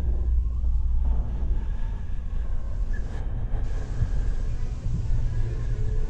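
Steady low rumble with a faint hiss over it: the soundtrack of dark police body-cam footage in a horror fan film.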